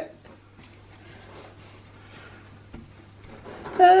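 Faint rustling of a felt jigsaw puzzle mat being rolled up by hand around its tube, with one small click partway through.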